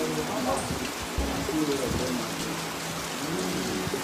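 Steady rain falling, an even hiss that does not let up.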